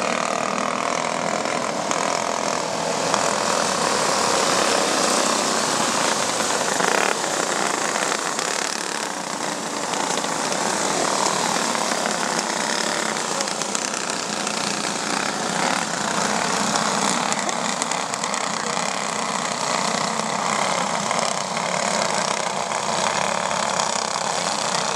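A pack of flathead-class racing go-karts running together at racing speed on a dirt oval, their small engines making a steady, loud, dense buzz.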